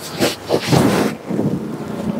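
Rustling of a semi-tussar silk saree being handled and unfolded close to the microphone, in several quick bursts of cloth noise.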